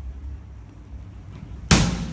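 A wooden cupboard door shutting with a single sharp bang near the end, over a low steady rumble.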